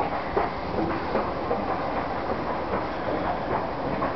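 Station escalator running: a steady mechanical rumble with repeated light clicks as the steps move.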